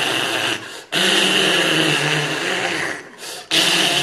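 Loud, harsh hissing with a throaty growl under it, done in imitation of a vampire. It comes in long breaths of about two seconds with short pauses between them.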